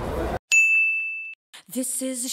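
The room noise cuts out, then a single clear, high ding starts sharply, holds for nearly a second and stops abruptly. Near the end a singing voice of background music begins.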